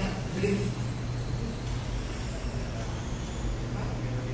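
Steady low hum, the kind a church sound system carries between words, with a word from the preacher's microphone right at the start.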